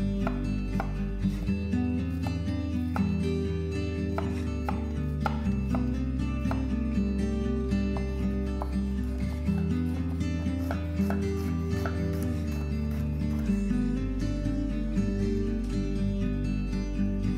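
Chef's knife chopping garlic cloves on a wooden cutting board: irregular sharp taps, roughly one or two a second, heard over steady background music with a bass line.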